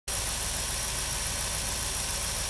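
6.1-litre Hemi V8 of a 2006 Jeep Grand Cherokee SRT8, fitted with a K&N cold-air intake, idling steadily.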